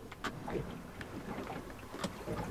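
Faint sounds of a small junk-rigged yacht under way, heard from inside its cabin: a low steady rush of water and wind on the hull, with scattered light ticks and creaks.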